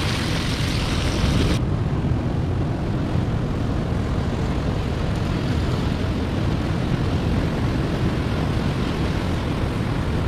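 Steady roar of sea surf breaking on rocks, with wind on the microphone. For about the first second and a half a brighter hiss of bacon sizzling in the frying pan sits on top, then stops suddenly.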